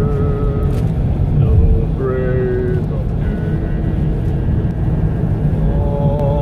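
Singing inside a moving car: long held, wavering notes in a few phrases over the steady low rumble of the car's engine and road noise.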